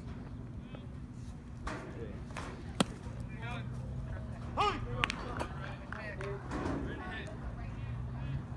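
A baseball bat cracking against a pitched ball about three seconds in, sending it up as a pop-up, with another sharp knock about two seconds later, over spectators' voices.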